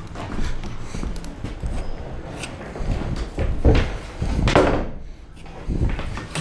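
Close handling noise: a continuous rustle with scattered knocks, the loudest a little past halfway.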